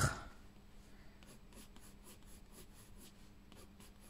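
Soft coloured pencil (Derwent Drawing, brown ochre 5700) stroking across paper: faint, short, quick scratches repeating about three times a second as hair strands are hatched in.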